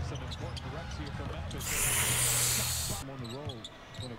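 Basketball game broadcast audio playing faintly: a commentator's voice over arena crowd noise, with the crowd swelling for about a second and a half in the middle.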